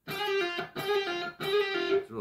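Electric guitar playing a short lead lick on the B string, slides and a pull-off, in three quick phrases. Each phrase is a held note stepping down to a lower one.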